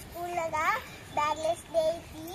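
A child's high voice delivering three short sing-song phrases, the pitch gliding up and down.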